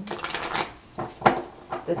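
A deck of tarot cards being shuffled by hand: a rapid flurry of card flicks in the first half second, then a few separate sharp taps, the loudest just past a second in.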